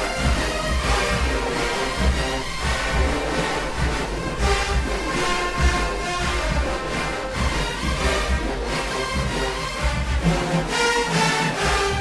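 A massed marching band plays a loud, sustained passage: trumpets, trombones and sousaphones in full chords, with clarinets among them, over a heavy bass and regular percussive hits.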